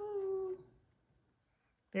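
A woman's voice holding one sung note for about half a second, gliding slightly downward, then quiet.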